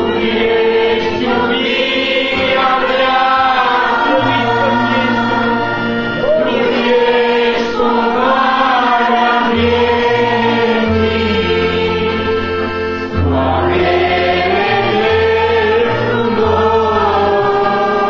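A group of voices singing a Christian worship song together, accompanied by a bass line of held notes that step to a new pitch every second or two.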